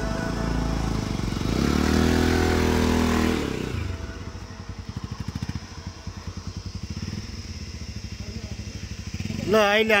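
Motorcycle engine running under throttle as the bike rides up, its pitch rising, then from about four seconds in idling with a fast, even putter.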